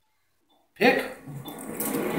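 Near silence for most of the first second, then a person's voice breaks in suddenly and loudly and carries on to the end.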